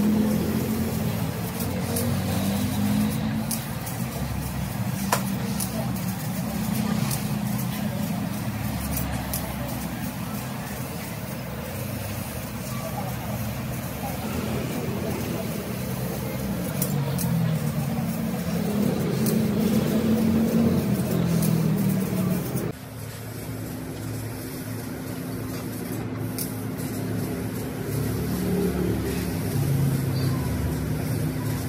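Steady workshop machine noise from a CNC laser cutting machine working steel plate, with indistinct voices in the background. About three-quarters of the way through, the sound changes abruptly and a steady low hum carries on.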